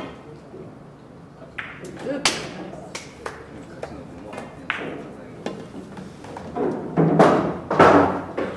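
Pool cue striking the cue ball, followed by sharp clicks of the balls colliding and hitting the cushions as an object ball is pocketed. A louder, longer clatter near the end.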